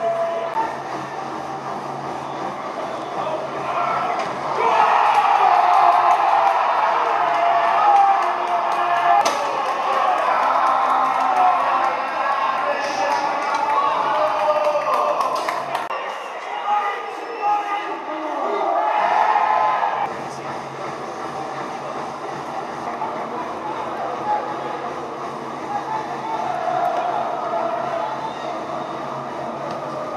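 Players and coaching staff shouting across a football pitch, the voices echoing around a stadium with empty stands, with occasional sharp knocks and a low steady hum underneath.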